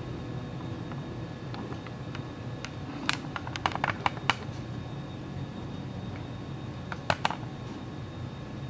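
Light, sharp clicks in two short clusters, about three to four seconds in and again about seven seconds in, over a steady low room hum.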